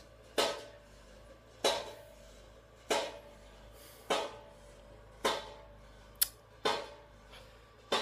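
Construction hammering outside, heard through an open window: a steady series of heavy strikes with a metallic ring, roughly one every second and a quarter, with one short sharper crack near the end.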